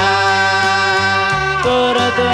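Music: the instrumental break of a slow Panamanian combo ballad, a lead line holding long notes over bass and band.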